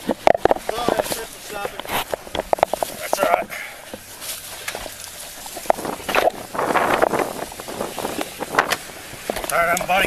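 Rustling, clicks and knocks of plastic bags and a cardboard diaper box being handled in a pickup's back seat, picked up close by a body-worn camera, with indistinct voices.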